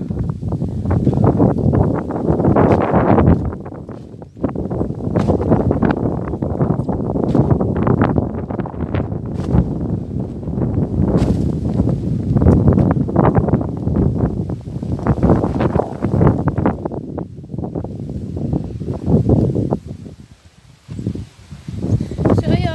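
Strong wind buffeting a phone's microphone in uneven gusts, with brief lulls about four seconds in and again near the end.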